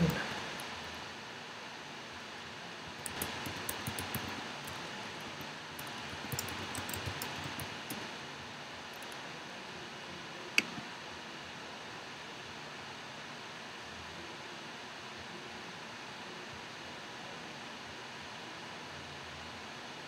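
Quick clicks of typing on a computer keyboard for a few seconds, then a single sharp click about ten seconds in, over a steady low hiss.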